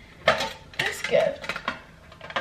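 A small red gift box being opened and handled: a quick series of sharp clicks, knocks and rattles as the lid comes off and the contents shift.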